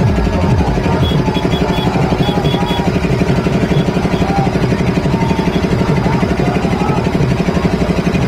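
A motor vehicle engine running steadily close by, with a rapid, even chugging.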